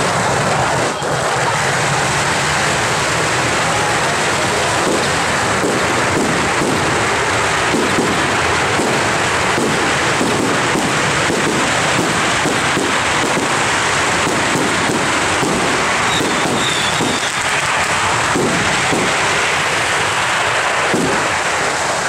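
A long string of firecrackers going off in a loud, unbroken, dense crackle of rapid cracks.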